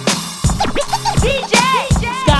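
DJ scratching a record on a turntable over a hip hop beat: a run of quick rising-and-falling pitch sweeps starting about half a second in, between kick drum hits.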